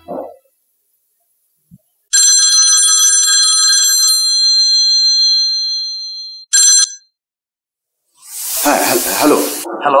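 Telephone ringing with an electronic ring. It is one long ring of about four seconds that fades at its end, followed by a short second ring.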